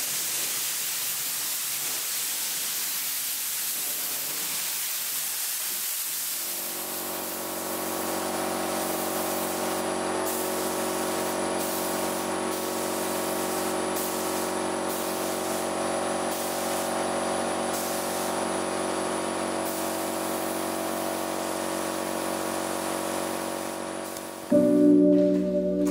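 Gravity-feed spray gun hissing with compressed air as black paint is sprayed, steady at first, then on and off in short bursts as the trigger is worked. About six seconds in, a steady machine hum starts and runs on beneath it.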